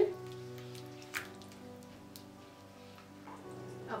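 Soft background music with sustained notes, over a faint pattering bubble of chickpea gravy simmering in the pan, with one sharp click about a second in.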